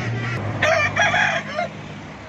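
A rooster crows once: a loud call of a few syllables, starting about half a second in and lasting about a second.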